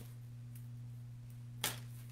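Steady low electrical hum, with one sharp click about one and a half seconds in as the artificial floral stems are handled.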